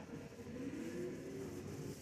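Quiet supermarket background: a faint, steady hum with no distinct events.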